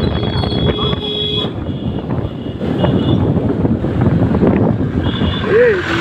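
Motorcycle riding through street traffic, with wind buffeting the microphone over the engine and road noise. A high, steady horn tone sounds for about the first second and a half and briefly again later.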